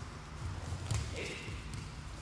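Bare feet on the practice mats: one dull thump about a second in as the two aikido practitioners close in for a technique, over a steady low hum.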